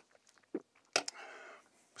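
A person sipping and swallowing from a drink can, with a sharp lip smack about a second in followed by a short breathy exhale.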